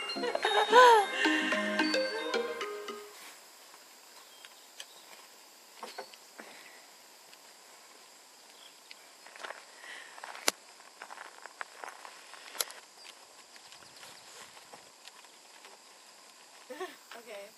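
A woman's delighted exclamation and laugh in the first few seconds. After that, quiet outdoor sound with scattered faint clicks and knocks.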